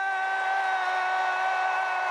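A woman's long, loud shout held on one steady high note, the drawn-out final syllable of "Kamala Harris!", sustained without a break.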